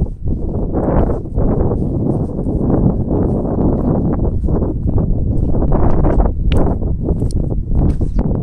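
Wind rumbling and buffeting on the microphone, with the irregular thuds of someone walking along a path of stepping stones and grass.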